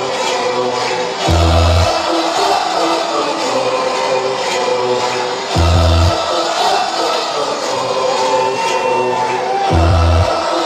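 Dance music from a DJ mix played loud over a festival sound system, with a deep bass hit about every four seconds.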